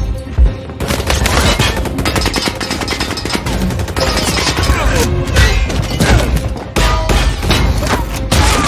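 Action-film fight sound mix: rapid bursts of gunfire and repeated hits and crashes over an orchestral score. The sounds come thick and loud from about a second in, with a brief dip near the end.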